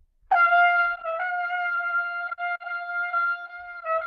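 A trumpet holding one long note, the G on top of the staff, heard over a video call; the pitch flickers slightly about a second in and again near the end. It is an upper-register control exercise: staying on the G while the G-sharp fingering is put down.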